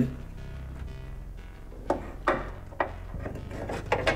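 Soft background music with a steady low hum, broken by a few sharp knocks and clunks as the car's hood and its prop rod are handled, two in quick succession about two seconds in and more near the end.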